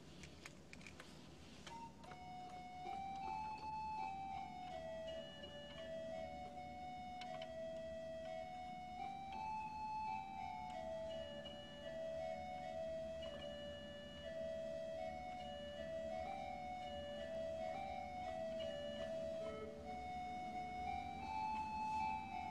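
A slow melody in D major played on an organ: single held notes stepping up and down over a soft sustained lower tone, beginning about two seconds in.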